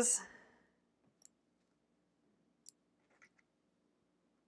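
Near silence, with three faint, short clicks of small scissors snipping the thread between chain-sewn four-patch units.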